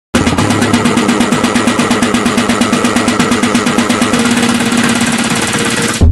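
A loud, machine-like buzz made of fast, even pulses over a steady hum. It starts abruptly and cuts off suddenly at the end.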